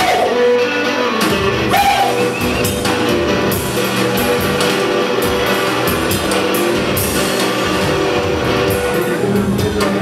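Live rock band playing an instrumental stretch, with electric guitar to the fore over drums.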